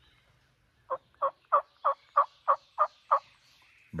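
Soft hen-turkey yelps blown on a diaphragm mouth call: a run of eight short, evenly spaced yelps, about three a second, beginning about a second in.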